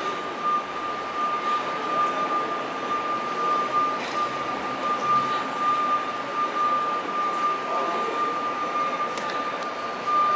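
City street ambience: a steady wash of traffic and passing people, with a constant high-pitched electronic whine heard throughout.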